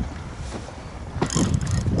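Wind buffeting the microphone, a steady low rumble, with a louder, rougher rustling burst starting a little past a second in.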